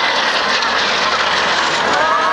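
Kawasaki T-4 jet trainer flying past, its twin turbofan engines making a steady jet noise.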